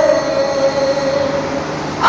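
A man's singing voice holding one long note that slowly fades, with no words or breaks.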